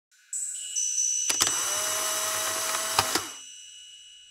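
Synthetic sound effect for the title card: high steady ringing tones, joined about a second in by a loud whirring, machine-like swell that stops with a pair of sharp clicks about three seconds in, after which the ringing tones fade.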